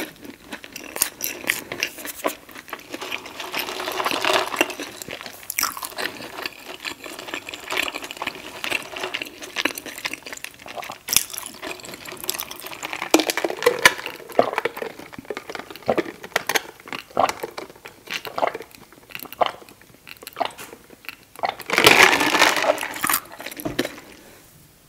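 Close-miked mouth sounds of chewing and swallowing the last bites of fried chicken, with wet clicks and smacks throughout, and a sip from a plastic cup of iced lemonade in the middle. A louder sound of about a second and a half comes near the end.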